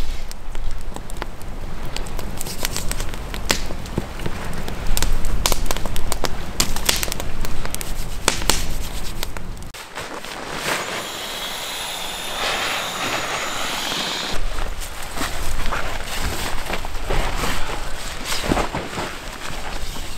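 Wood campfire crackling and popping, with many sharp snaps at irregular intervals. About halfway through, the low rumble drops away for roughly four seconds and a steadier hiss comes up under the crackling.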